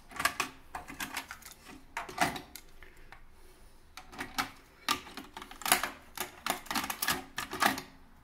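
Sony TC-V715T cassette deck's transport mechanism clicking and clunking as its front-panel buttons are pressed: a run of sharp, irregular clicks.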